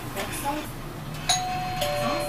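Two-note electronic chime inside a bus: a sharp high note about a second in, stepping down to a lower held note, the familiar 'pin-pon' of a Japanese route bus. A voice is heard before it.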